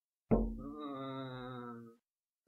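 A sudden hit followed by a long, steady-pitched chant-like tone lasting about a second and a half, cut off abruptly: an edited-in comic sound effect laid over the blow with the water jug.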